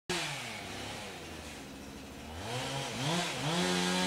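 Chainsaw running, first at a steady idle, then revved up and down several times in the second half, its pitch rising with each rev.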